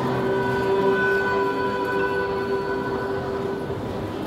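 Piano trio of violin, cello and piano holding one long bowed chord, the closing chord of the piece, which stops near the end.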